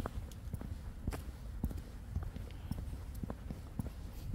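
Footsteps of a person walking on a tarmac footpath, about two steps a second, over a steady low rumble.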